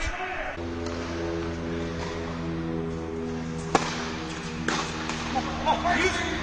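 Tennis ball struck by a racket: one sharp, loud pop a little over halfway through, then lighter hits about a second apart as the rally goes on. Steady background music plays throughout.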